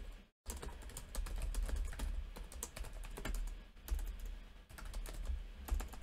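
Typing on a computer keyboard: an irregular run of key clicks, starting about half a second in after a brief dropout.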